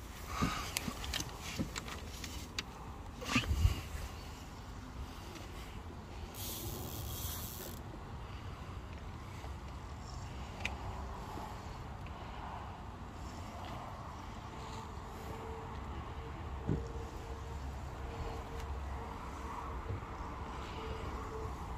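Spinning-reel and rod handling noise while a hooked carp is played: scattered clicks and a sharp knock in the first few seconds, then a brief hiss about six seconds in, over a low steady rumble.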